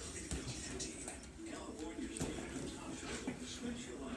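Faint, indistinct talk in a small room, with a few soft thuds from gloves tapping a heavy punching bag.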